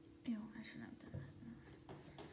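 A girl's soft, murmured speech, too quiet to make out, over a faint steady hum.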